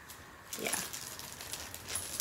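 Small metal clicks and light jingling from a gold chain strap and a charm's clasp being handled and hooked together, starting about half a second in.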